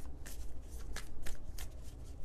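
A tarot deck being shuffled by hand: a string of quick, irregular card flicks and slaps.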